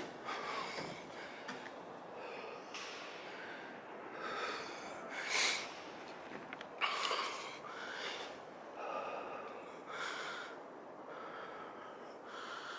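A man breathing heavily close to the microphone, one breath roughly every second.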